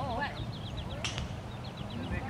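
A bird calling in quick runs of short, high chirps, about six or seven a second, with a single sharp click about a second in, over a low outdoor rumble.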